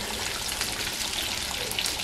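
Flour-coated chicken wings deep-frying in hot oil in a cast-iron skillet: a steady, crackling sizzle.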